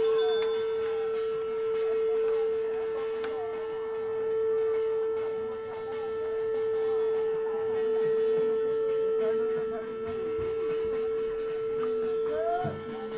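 A single steady ringing tone, held unbroken and level in pitch, with faint voices beneath it.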